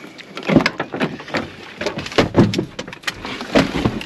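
A pickup truck's door being unlatched and opened, followed by a series of knocks and thuds as someone climbs into the cab.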